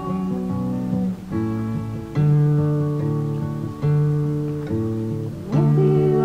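Acoustic guitar playing an instrumental passage of a folk song with no singing: plucked chords left to ring, with a new chord struck about every second.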